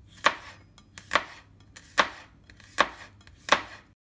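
Chef's knife slicing green pepper into thin strips on a plastic cutting board: five sharp knocks of the blade on the board, a little under a second apart.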